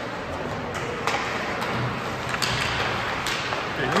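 Ice hockey play: several sharp clacks of sticks and puck scattered over steady arena background noise.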